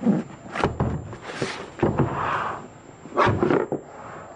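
Hard plastic tool case scraping as it slides out of its cardboard box, with several short knocks of plastic against cardboard and the table.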